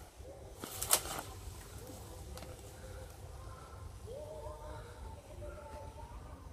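A bamboo pole knocks once, sharply, against a pod-laden branch of an Indian trumpet tree (Oroxylum) about a second in. Around it come several long, steady bird calls that each begin with a short upward slide.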